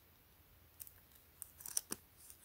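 Adhesive guide sticker being peeled off its paper backing sheet: a few faint crackles and ticks in the second half.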